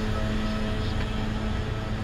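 Street traffic: a car engine running with a steady low hum and rumble, the hum dropping out shortly before the end.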